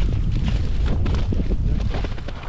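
Wind buffeting the microphone in a steady low rumble, with footsteps crunching in snow.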